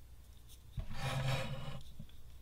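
Plastic bucket scraping on a tabletop as it is tipped up onto its edge: a knock about a second in, then about a second of rubbing.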